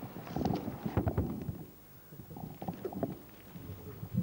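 Microphone handling noise: irregular low rumbles and soft knocks, busiest in the first second and a half, easing, then a few more knocks near the end.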